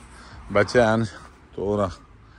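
A man's voice: two short vocal sounds, one about half a second in and one near the end, with quiet outdoor background between them.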